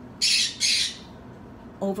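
Pet parrot giving two harsh squawks in quick succession, within the first second.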